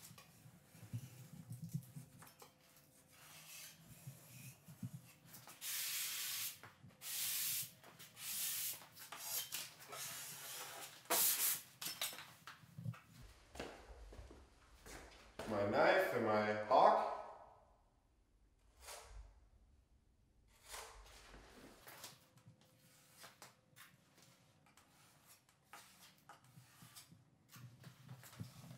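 Steel putty knife scraping dried joint-compound ridges off a drywall inside corner, with a sanding block rubbing over it, in a series of short separate strokes. A louder, longer scrape comes about halfway through, then a few quieter strokes.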